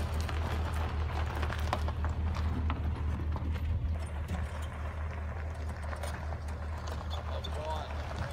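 A vehicle engine running low and steady while tyres crawl over a rocky dirt track, stones crunching and clicking under them in scattered knocks.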